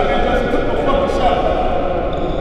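A man talking in an echoing gym, his words smeared by the reverberation.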